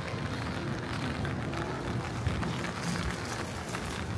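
Rain pattering on an umbrella, many small drop ticks over a steady low city hum.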